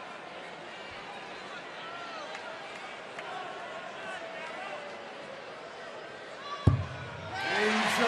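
Arena crowd at a darts match murmuring, with scattered voices and whistles, while a player throws for a finishing double. One sharp thud comes about two-thirds of the way through, and the crowd noise then rises sharply into a loud reaction near the end, as the double is missed.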